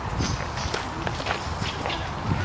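Footsteps of someone walking at a steady pace along a dirt path, several steps a second. A short high bird chirp sounds near the start.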